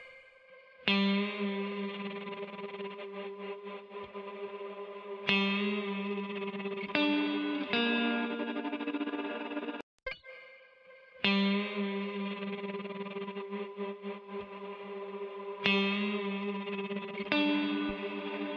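Electric guitar playing sustained chords through a shimmer reverb and tremolo effects chain, with long washing tails. The same short phrase is played twice, breaking off near the middle and starting again about a second later. The second pass is with the side-chained compressor on the wet send bypassed, a subtle difference.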